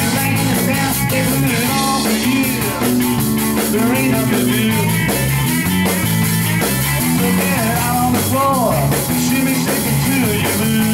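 Live blues-rock band playing an instrumental stretch with no vocals: electric guitar with bending notes over a walking bass line and drum kit.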